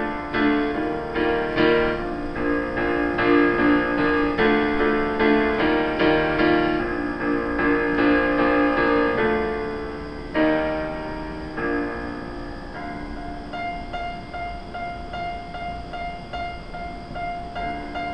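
Roland FP-4 digital piano playing an instrumental intro of chords struck in a steady pulse. It thins out and grows softer about two-thirds of the way through, with lighter held notes.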